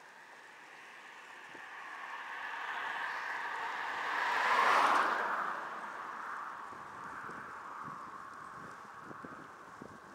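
A motor vehicle passing by at speed, its road noise swelling to a peak about five seconds in and fading away, the pitch dropping as it goes past. Light knocks and rattles follow near the end.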